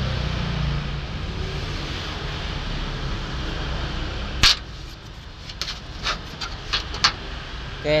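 Small metal parts of an airbrush kit being handled: one sharp click about halfway through, then a handful of lighter clicks and taps over the next few seconds. Under them runs a steady low background hum that drops away at the first click.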